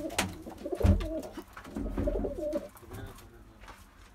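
Domestic pigeons cooing in a small loft, several wavering coos overlapping, with a low thump about a second in and another near two seconds; the cooing fades toward the end.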